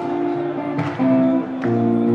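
Strat-style electric guitar played live, a new chord struck roughly every second with the notes left ringing between strikes.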